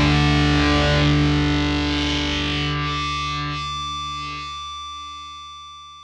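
Closing chord of an instrumental TV theme: a held, distorted electric guitar chord that rings on without new notes and slowly fades away, with a sweeping swirl through its upper range about halfway through.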